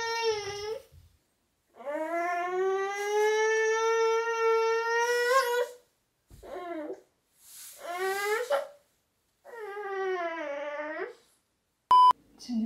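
A feverish one-year-old baby crying: a long sustained wail, then three shorter cries with pauses between them. A short beep sounds right at the end.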